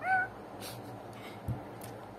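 A woman's playful imitation of a cat's meow: one short call with a rise and fall at the very start. A brief thump follows about a second and a half in.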